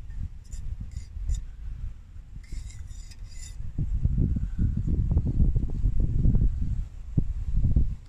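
Metal spoon stirring tea in an enamel mug, with a few light clinks against the mug over the first three seconds or so. After that a louder, uneven low rumble takes over until near the end.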